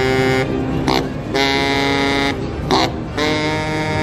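Eastman baritone saxophone playing a slow phrase: long held notes of about a second each, broken by short notes and brief breaths between them.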